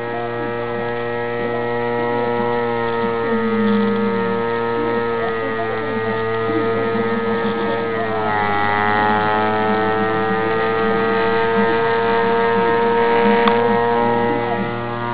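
Bedini pulse motor with an audio-transformer drive coil running: a steady electrical whine over a low hum, made by the coil being pulsed as the rotor's magnets pass. The whine's pitch dips slightly about eight seconds in, then holds steady.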